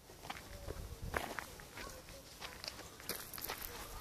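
Footsteps of a person walking outdoors, an irregular series of short steps and scuffs.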